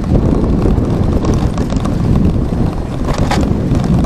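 Wind buffeting the microphone of a moving bike-mounted camera: a steady, loud low rumble, with a brief rattle about three seconds in.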